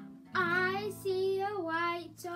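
A woman singing a children's song, accompanied by acoustic guitar; her voice comes in about a third of a second in after a short gap.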